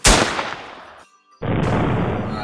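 A single rifle shot: one sharp crack whose echo dies away over about a second. About a second and a half in, a loud burst of rushing noise follows.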